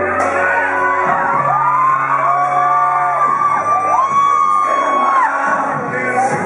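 Live acoustic guitar music with high whoops and yells from the crowd gliding up and down over it.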